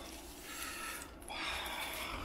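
Plastic wrapping on an LP record jacket rustling and crinkling as it is pulled off. It comes in two stretches, a short one about half a second in and a longer one from about a second and a half on.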